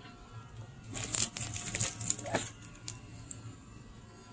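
Clear plastic wrap crinkling as a wrapped headlight assembly is handled: a burst of crackles starting about a second in and lasting a second and a half, then a few faint ticks.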